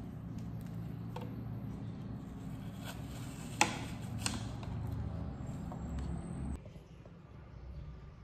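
Kitchen knife cutting peeled fruit on a ceramic plate: a handful of sharp clicks as the blade meets the plate, the loudest about three and a half seconds in, over a steady low room hum that drops away near the end.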